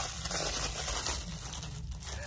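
Crinkly striped wrapper being worked open by hand, a steady rustling and crinkling as it is pulled apart to free the small item inside.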